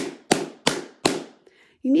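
Closed plastic Quilt Pounce chalk pouncer banged four times in quick succession, about three knocks a second, to work the chalk into its felt pad.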